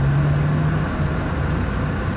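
Cabin sound of a Honda Fit Hybrid, fitted with a Kakimoto Kai aftermarket muffler, driving at low speed: a steady low engine-and-road hum. A steady low drone fades out a little under a second in.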